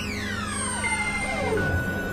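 Experimental electronic music: several tones sweep downward together through the first second and a half, over steady held tones and a low drone.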